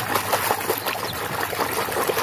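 Water splashing and sloshing as a hand scrubs a toy under water in a plastic basin: a continuous run of small splashes.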